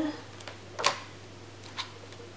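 Pages of a large art book being turned by hand: one sharp paper flick a little under a second in, and a fainter one near the end.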